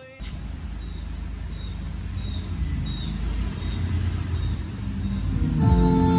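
Music played through loudspeakers driven by a Ramsa WP-9100 power amplifier on test: a deep, noisy, bass-heavy intro that grows steadily louder as the input level is turned up, with clear pitched instrument notes coming in near the end.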